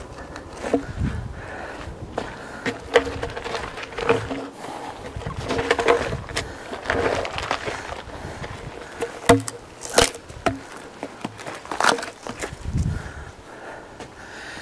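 A log being dragged by hand with a log hook over gravel and sawdust: irregular scraping and crunching, with footsteps and scattered knocks of wood.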